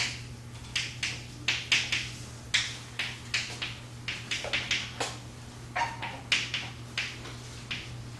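Chalk writing on a blackboard: a quick, uneven run of short scratches and taps, a few per second, as each stroke is made. A steady low hum lies underneath.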